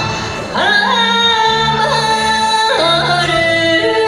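A woman singing enka over a karaoke backing track, her voice sliding up into a long held note about half a second in, then dropping to a lower held note near three seconds.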